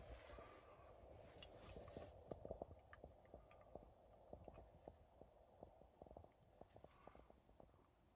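Near silence: faint night-time outdoor ambience with scattered small clicks.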